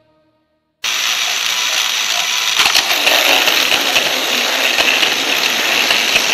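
A battery-powered toy train's small electric motor and gears running on plastic track, heard close up from a camera riding on the layout. It starts abruptly about a second in as a loud, steady whirring rattle, with a few clicks a couple of seconds later.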